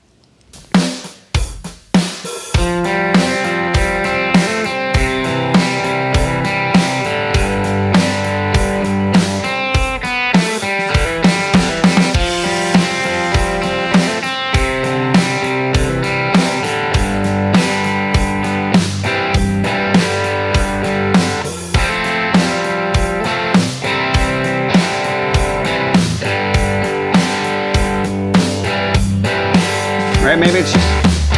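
Telecaster-style electric guitar playing rhythm chords with hammered-on fills in time with a recorded drum-kit groove. A few separate hits come first, and the full beat and guitar settle in about two seconds in and keep an even tempo.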